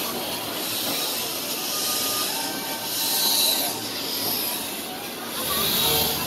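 Narrow-gauge steam train rolling past, with steam hissing from the locomotive that swells about halfway through and again near the end.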